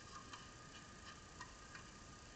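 Near silence: faint background hiss with a faint steady high whine and a few faint, irregularly spaced ticks.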